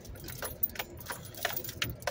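Light, irregular clicking and rattling inside a slowly moving car's cabin, over a low steady rumble from the car.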